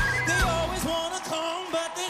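A live band playing a pop-rock song, with a male singer's voice gliding between sung phrases.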